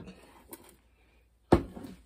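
A half-gallon glass canning jar set down on the kitchen counter: a faint click, then one sharp knock about one and a half seconds in.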